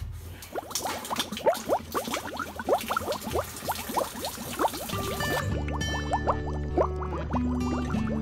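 Dirty water gurgling and splashing as it drains, full of quick bubbling pops, for about five seconds, then it stops. Guitar background music with a steady bass runs under it and carries on alone.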